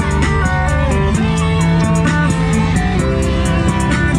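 Instrumental stretch of a song between verses, with guitar over a steady drum beat.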